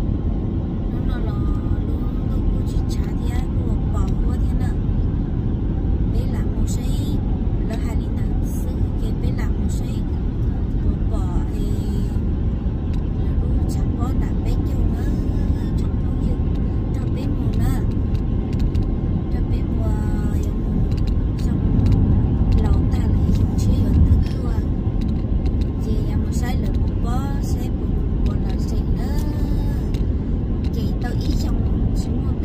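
Road and engine noise inside a moving car's cabin: a steady low rumble that swells briefly about two-thirds of the way through.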